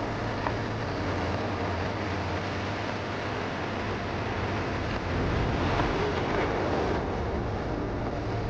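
Steady outdoor ambience picked up by a camera microphone carried at walking pace: a constant low rumble under an even hiss. A sharp click comes right at the start, with a fainter one about half a second later.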